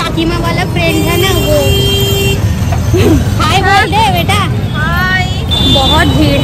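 Busy street traffic and crowd noise, with a vehicle horn held for over a second about a second in. Voices talk close by later on.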